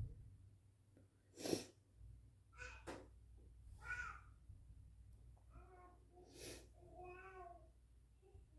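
Faint, scattered short sounds: two sharp hissy bursts, the louder about a second and a half in, and several brief pitched calls like a cat meowing softly.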